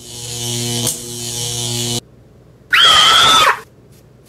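Two edited-in sound effects. First a steady buzzing tone with a hiss on top fades in and stops abruptly after about two seconds. Then, near the end, a brief loud tone slides up in pitch and holds for under a second.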